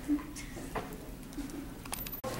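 Quiet room with two short, low hums of a person's voice: one just after the start and a fainter one about a second and a half in.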